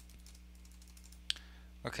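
Computer keyboard keystrokes: a few faint key taps and one sharper key press about a second and a half in, over a low steady hum.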